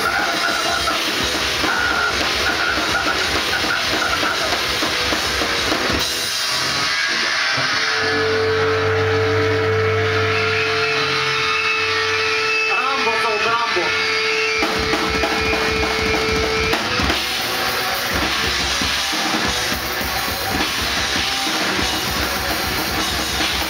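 Grindcore band playing live: fast drumming on a drum kit with distorted guitar. About six seconds in it drops into a sparser passage with a long held note and wavering pitches. The full band comes back in at about seventeen seconds.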